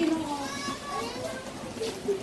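Soft, indistinct talking voices, with a small child's vocal sounds among them.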